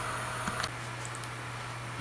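Steady low electrical hum with a faint hiss, and a brief click about half a second in.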